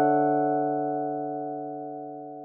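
Background music: a sustained chord struck just before, slowly fading away.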